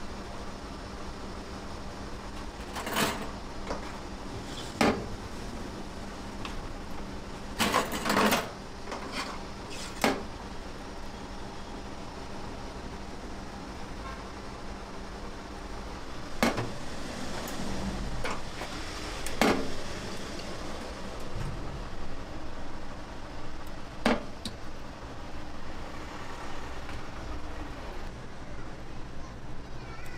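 Metal clinks and knocks as raw pork belly is pushed onto a long steel roasting spit over a stainless-steel sink, about seven of them spread out, the loudest a quick cluster about eight seconds in. A steady low hum runs underneath.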